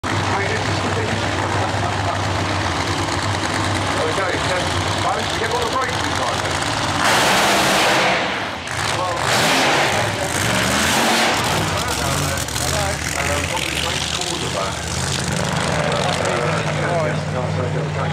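Fuel funny car engines: supercharged nitromethane V8s. They idle steadily, then go to full throttle with two very loud bursts, about seven and nine seconds in, then fade with falling pitch as the car runs away down the track. A public-address voice talks over the engines.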